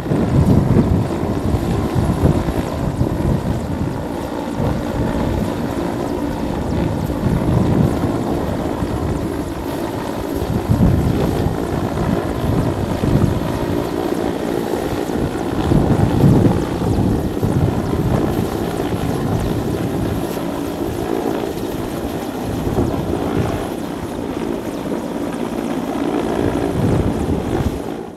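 Mi-8 helicopter hovering, its main rotor and twin turboshaft engines running loud and steady, over an uneven low rumble.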